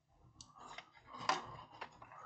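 Faint handling noise from the opened back of a flat-screen TV: small clicks and rustling as hands work around the panel and ribbon cables, with a sharper click a little over a second in and another near the end.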